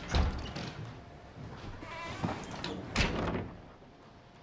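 A door shutting with a heavy thud, then a second knock about three seconds in, with light rustling and movement between.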